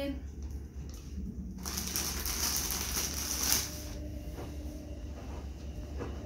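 Thin plastic bag crinkling for about two seconds, starting a second and a half in and ending with a louder crackle, as pom-poms are handled.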